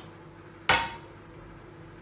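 A single sharp clank of metal cookware knocked onto the stovetop, about two-thirds of a second in, with a short ring that dies away quickly.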